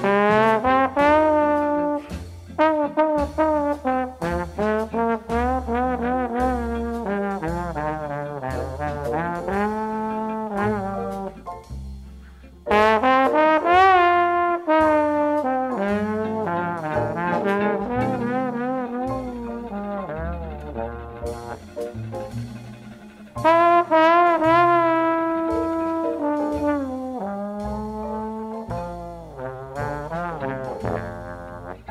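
Jazz record: a trombone plays a bluesy solo in long phrases of bending, wavering notes over a bass line. The phrases break off and come back in loudly about 13 seconds in and again about 23 seconds in.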